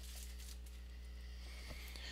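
Faint room tone: a steady low electrical hum with light hiss, and one small click near the end.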